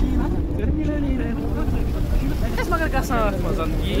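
Steady low rumble of a car running, heard through an open window, with a person talking briefly a little past the middle.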